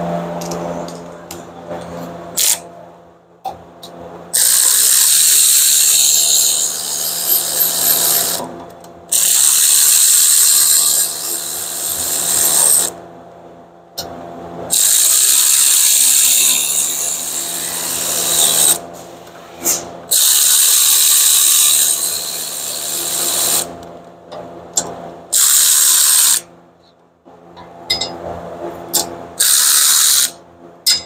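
Cordless electric ratchet running in repeated bursts of about three to four seconds, with quieter gaps between them, as it backs out the 14 mm bolts that hold the rear hub bearing to the knuckle of a Subaru Impreza.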